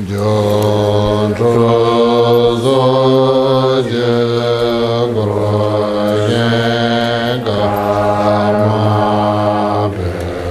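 Tibetan Buddhist liturgical chanting in a low male voice, held on near-level notes in phrases of about a second each, stepping between a few nearby pitches.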